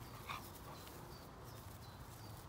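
A Staffordshire bull terrier–Rhodesian Ridgeback cross dog gives one short, excited yip while playing, about a third of a second in.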